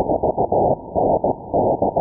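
Morse code CQ call on the 2-metre amateur band, received through an SDR's narrow CW filter, keyed on and off in short and long elements. Carried by aurora, the note comes through as a raspy, hissing buzz rather than a clean tone.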